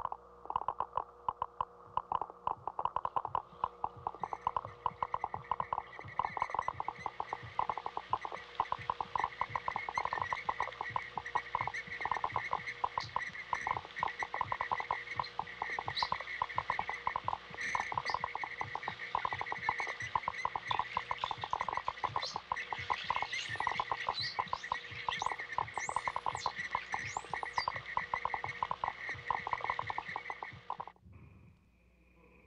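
Film soundtrack of a dense, rapid pulsing chorus, like many small clicks packed together. A higher-pitched layer joins about four seconds in, and short high rising chirps come through near the end.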